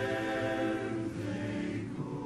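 Men's barbershop chorus singing a cappella, holding a close-harmony chord that moves to a new chord a little past halfway through.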